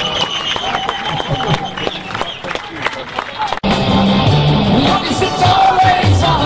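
Live rock band heard through the concert crowd. The first part holds scattered sharp hits and crowd noise with a voice over them; about three and a half seconds in, an abrupt cut leads into the full band playing, with bass notes standing out.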